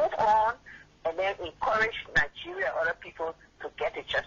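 Speech only: voices talking over a telephone line.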